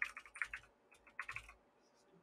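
Computer keyboard being typed on, two quick quiet bursts of keystrokes.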